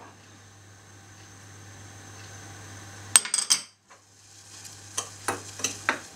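A metal spoon clinking and scraping on a china plate as sugar and cocoa powder are mixed together. There is a cluster of clicks about three seconds in and a few more near the end, over a faint steady hiss from the stove where butter is melting in a saucepan.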